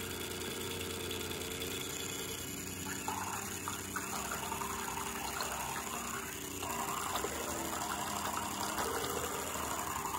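Vintage K&O battery-powered toy Evinrude outboard running on three volts with its propeller in a jar of water: a steady small electric-motor hum, joined about three seconds in by the propeller churning the water.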